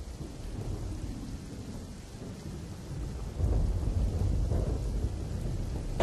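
Floodwater rushing over a dam spillway: a steady, low, rumbling roar that swells about three and a half seconds in.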